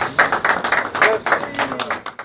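A group of men laughing together in quick bursts, with a few hand claps mixed in.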